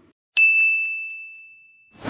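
A single high, bell-like ding sound effect struck about a third of a second in, one clear tone that fades slowly over about a second and a half. It is a transition chime marking the cut to a chapter title card.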